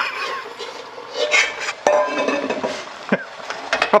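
A stainless steel bowl used as a makeshift lid clanking and scraping against a metal steamer pot, with a couple of sharp metal knocks and some ringing, over a hiss of sizzling from the hot pot.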